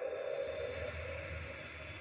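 Room tone in a pause between spoken phrases: a faint, steady low hum with light hiss, after the last word's echo dies away.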